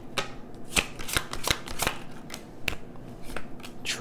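Tarot deck being shuffled by hand: a quick, irregular run of card-on-card clicks and slaps.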